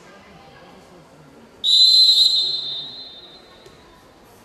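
Referee's whistle: one long, shrill blast that starts suddenly about a second and a half in and fades out over a little more than a second, signalling the throw-off that starts play in a youth handball match.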